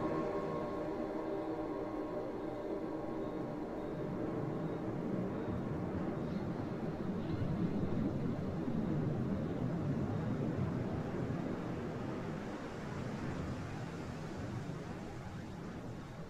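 A vaporwave track played from vinyl: the pitched music fades out at the start, leaving a rumbling noise wash like a passing train or aircraft. The wash swells through the middle and slowly fades away.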